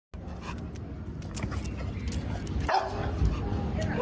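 A dog barking, with one clear bark a little past halfway, over steady outdoor background noise.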